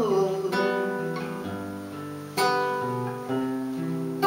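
Acoustic guitar playing chords. New chords are struck about half a second in and again at about two and a half seconds, and each is left to ring and fade.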